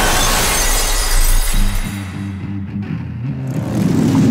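A glass pane shattering as a body crashes through it, with a deep rumble under the crash, over trailer music. The crash and falling glass fill the first two seconds. From about halfway, a low pulsing music figure takes over.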